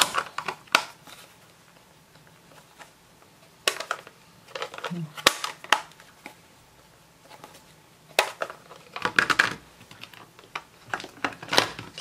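Irregular sharp plastic clicks and knocks as stamp-ink pad cases and a small ink refill bottle are handled on a craft mat, with a quick cluster of clicks about nine seconds in.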